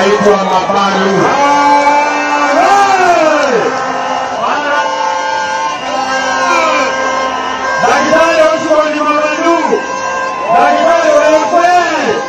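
A man's voice singing over music, with long held notes that slide up and down in pitch.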